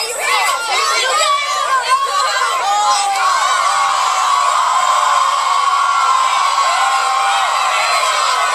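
A large crowd of young people shouting and cheering, many voices overlapping. About three seconds in, the voices merge into a steady, continuous mass of crowd shouting.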